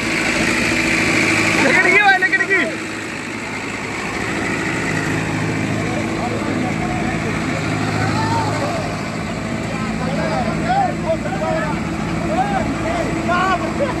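A small car's engine running steadily while the car, stuck in deep mud, is being pushed, with men shouting over it in short bursts about two seconds in and again from about eight seconds on.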